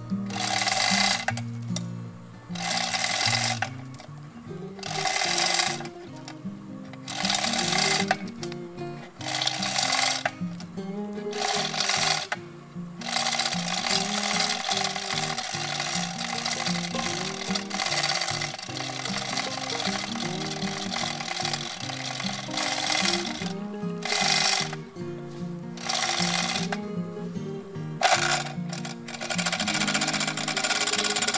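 A hand-operated chain hoist on a tripod is pulled in short spells of about a second, roughly every two seconds, its chain rattling through the block, with one long unbroken run of about ten seconds in the middle. It is lifting a Chinese tallow tree stump whose roots still hold, so it does not lift. Background music with a melody plays throughout.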